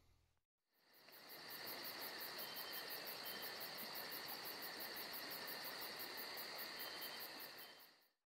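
Insects chirring, a steady high-pitched buzz with a fast, even pulsing of about five beats a second, fading in about a second in and fading out at the end.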